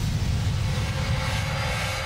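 Low, steady rumbling drone of a closing logo sting's sound design, with faint high tones coming in about a second in.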